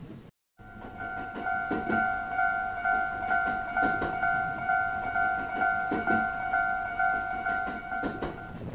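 Japanese railroad crossing alarm ringing steadily at about two strikes a second, cutting out briefly just after the start. Under it, a passing train rumbles with a few wheel clacks.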